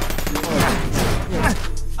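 Cartoon sound effects: a rapid clatter of hits, with several falling whistle-like glides, over music.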